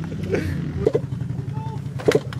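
Dirt bike engine idling steadily, with a few brief fragments of voice over it.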